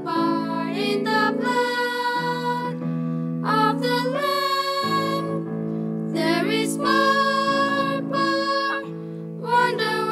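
Three girls singing a worship song together over instrumental backing, their sung phrases with brief breaks between them over held low chords.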